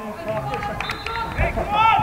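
Men shouting to each other across an outdoor football pitch, the loudest call near the end, with a single dull thump about one and a half seconds in.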